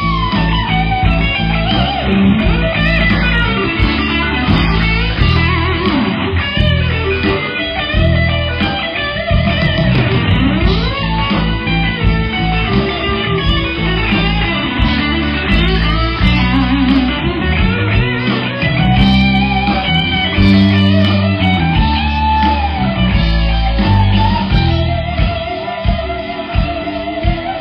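Live rock band playing an instrumental break: amplified electric guitars, with a lead line of bending notes, over bass guitar.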